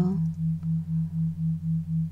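Synthetic low tones under a hypnosis narration: a steady hum with a second tone pulsing evenly about four times a second, an isochronic brainwave-entrainment drone.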